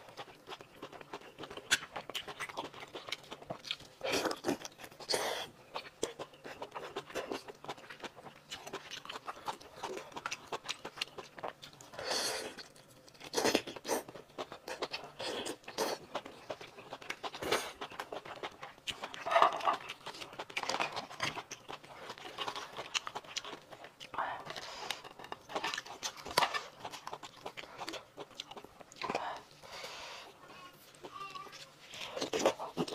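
Close-miked eating of spiced lobster: chewing and biting, with shell pieces clicking and cracking in irregular bursts.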